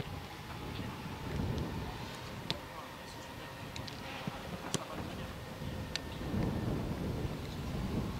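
Low wind rumble on the microphone with faint voices under it, and a few sharp knocks, the loudest about two and a half and nearly five seconds in.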